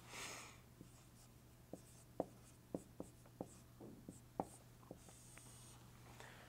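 Faint taps and strokes of a dry-erase marker writing on a whiteboard, a few irregular ticks a second, after a brief rustle at the start.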